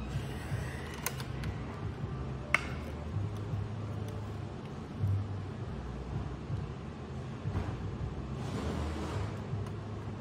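Screwdrivers working in the bare sheet-metal chassis of an HP TouchSmart 300 all-in-one computer: two sharp metal clicks about one and two and a half seconds in, then light scraping and handling over a low steady hum.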